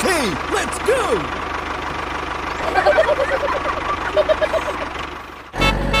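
Engine-running sound effect for a toy forklift: a low, steady rumble with short squeaky cartoon sounds over it, sliding down in pitch in the first second and coming as quick blips around the middle. The rumble cuts off about half a second before the end and a louder steady buzzing tone takes over.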